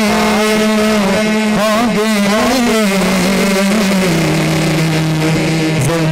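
A man singing a naat into a microphone through a PA system, holding long notes with wavering ornaments, over a steady sustained lower drone that drops in pitch partway through.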